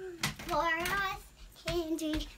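A young girl singing a couple of drawn-out, wavering notes, with a short sharp click just before the first.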